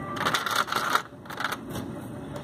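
Small plastic Lego minifigures and pieces being handled on a baseplate: a quick run of light clicks and rattles in the first second, then quieter shuffling.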